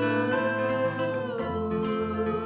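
Live acoustic guitars and mandolin playing a folk song's instrumental passage, with a held melody note that steps down in pitch about a second and a half in.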